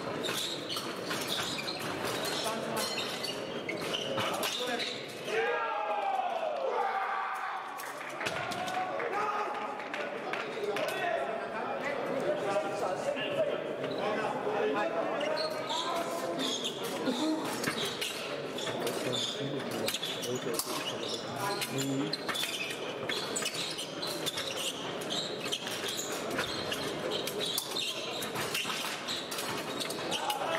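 Épée fencers' footwork thumping and stamping on the piste, with sharp clicks of blades meeting, during a bout.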